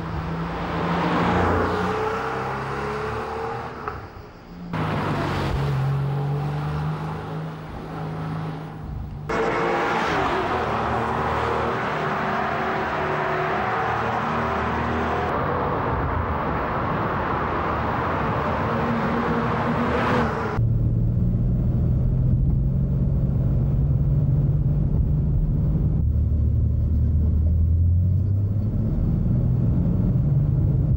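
Porsche 911 (993) air-cooled flat-six engine accelerating and changing gear as the car drives along a winding road, heard across several cut shots. In the last third the engine sound turns lower and duller, a steady drone that rises in pitch near the end.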